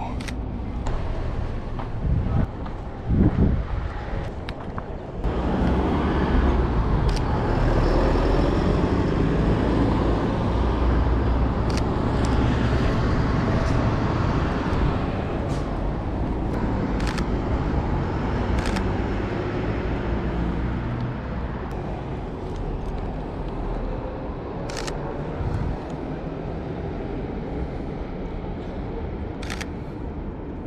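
Street traffic, with a vehicle's low rumble swelling from about five seconds in and easing off after about fifteen seconds. Sharp camera shutter clicks sound every few seconds.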